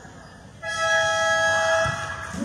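A basketball game buzzer sounds one steady, pitched blast lasting a little over a second, starting about half a second in.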